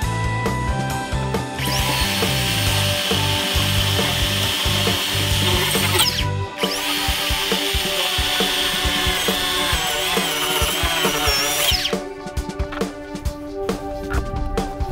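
Cordless power saw cutting through a foam insulated concrete form block: the motor spins up, runs under load for about four seconds, breaks off briefly, then runs again for about five seconds and winds down, followed by a few clicks and knocks. Background music plays underneath.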